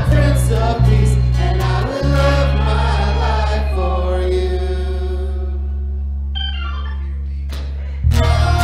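Church worship band with singers on the closing 'ooh' outro of a song. About two seconds in they hold a chord over a steady bass note, and it slowly fades.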